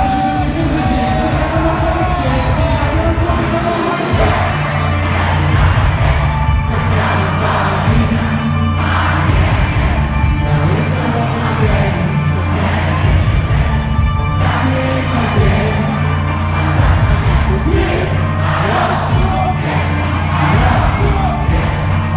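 Live pop-rap song played loud through a concert PA, with a heavy bass line coming in about four seconds in, vocals, and a crowd cheering along.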